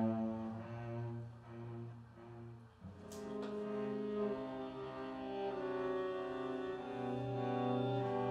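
String quartet of violins, viola and cello playing slow, held notes over a low cello line. It dies away almost to nothing just before three seconds in, a short click follows, and the playing resumes and swells.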